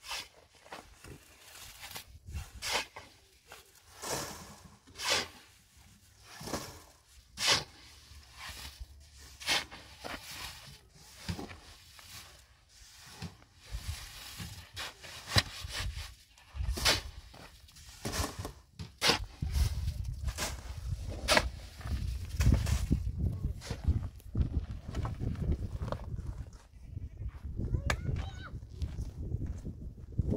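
Steel shovels scraping and chopping through a heap of wet concrete mix on bare ground, one sharp stroke every second or two. A heavier low rumble joins in from about halfway.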